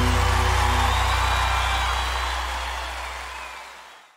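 A live band's closing chord, with a deep bass note under it, ringing on and fading out.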